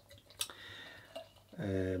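Beer being poured from a glass bottle into a beer glass: a faint liquid trickle between a couple of small clicks. A man's voice begins near the end.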